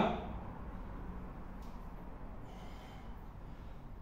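Faint, effortful breathing through the nose from a man doing an underhand chin-up, over a low steady hum.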